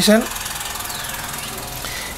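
Steady background hum during a pause in speech, with the end of a spoken word just after the start.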